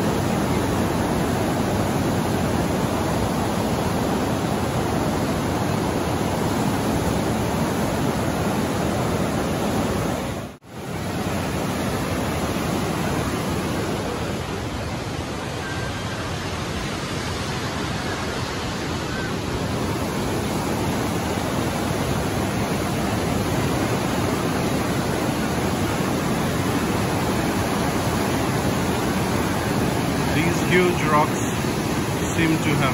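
Class 6 white-water rapids of the Niagara River rushing past close by: a loud, steady roar of churning water. The sound cuts out for an instant about ten seconds in.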